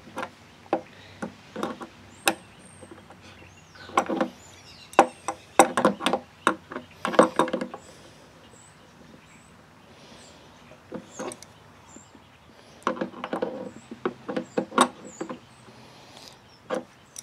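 Irregular small metal clicks and knocks as a nail pushed through the hole of an endpin jack's nut is turned to tighten the nut down on an acoustic guitar; the clicks come in clusters about four to eight seconds in and again near the end.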